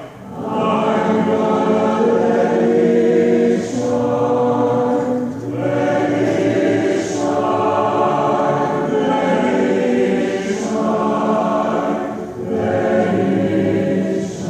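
A college choir singing a slow chorale in long, held phrases, with brief breaks between phrases.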